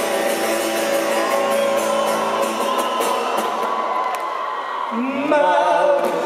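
A live acoustic song in a large hall: strummed acoustic guitar with singing, the audience singing along and whooping.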